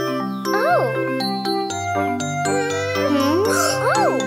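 Cartoon children's background music with a tinkling, bell-like melody over a bass line. Two short swooping rise-and-fall sounds come about half a second in and near the end.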